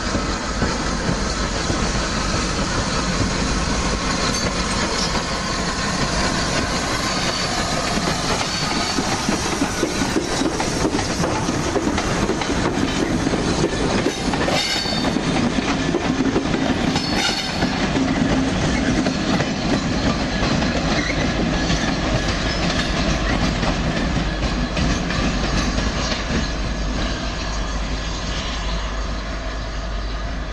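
A locomotive-hauled train rolling slowly past over points and rail joints, wheels clicking steadily, with brief high wheel squeals about halfway through.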